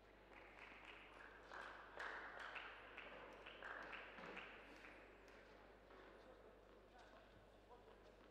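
Faint tennis rally on an indoor court: a string of sharp racket-on-ball hits and ball bounces over the first few seconds, then a few scattered taps as play stops.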